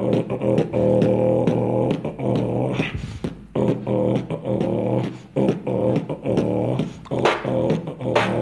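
Solo beatboxing, carried by a held, pitched vocal bass line that breaks off for short gaps, the longest about three seconds in.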